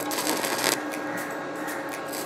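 Stick-welding arc crackling and sputtering irregularly as a rod electrode burns against a steel bar, with the welder set to about 90 amps. A faint steady tone runs underneath.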